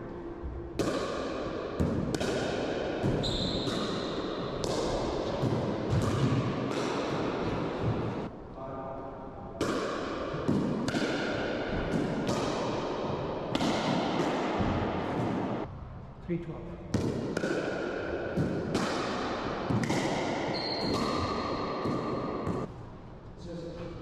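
A pickleball rally in an enclosed racquetball court: sharp hits of paddles on the plastic ball and the ball bouncing off floor and walls, each hit ringing with a strong echo. The hits come about every half second to second, with short squeaks between some of them and two brief pauses between points.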